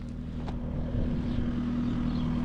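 An engine running steadily with a constant low hum, from farm machinery working the fields. There is one faint click about half a second in.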